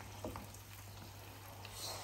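Curd-cheese doughnut balls frying in hot sunflower oil in a pot, a faint, steady sizzle with small crackles.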